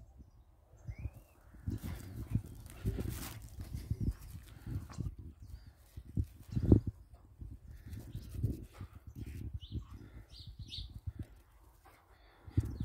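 Irregular low thumps of a large dog's paws running and bounding on a grass lawn, with a few short, faint high chirps near the end.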